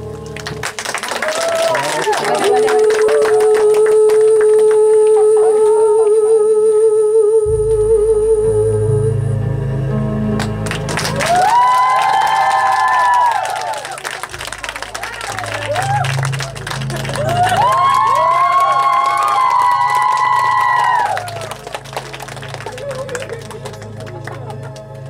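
Audience applause over music. The music has a long held note with vibrato, then a bass-heavy backing track with two swelling chords. Both die down shortly before the end.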